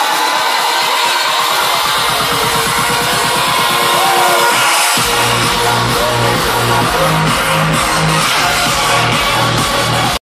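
Progressive house track played loud over a festival PA and recorded from the crowd. A build-up without bass, with a fast, tightening pulse, gives way about halfway through to the drop, where a heavy pulsing bassline comes in.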